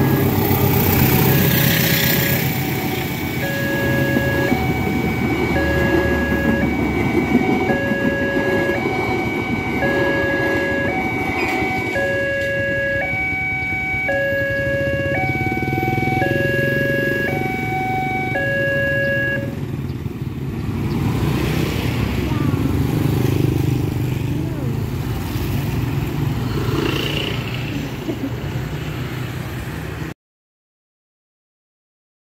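CC 201 diesel locomotive and its train rumbling past a level crossing. Over the rumble, the crossing's two-tone warning alarm alternates high and low about once a second and stops about 20 seconds in. After that, motorcycles ride across.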